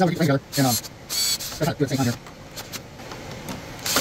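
Cordless drill driving a wood screw into a glued wooden frame joint, run in a few short bursts.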